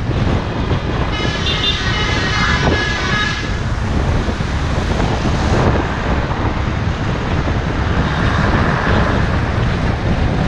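Aprilia Scarabeo 200ie scooter riding through city traffic: steady wind rush on the helmet- or bike-mounted action camera's microphone over the scooter's engine and road noise. From about one to three and a half seconds in, a high tone with several overtones sounds over the noise.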